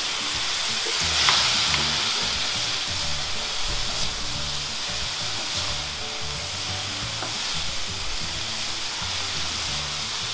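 Julienned carrot, sweet potato and wood ear mushroom sizzling steadily in hot oil in a metal wok as two silicone spatulas toss and stir them, with a couple of light spatula knocks a second or two in.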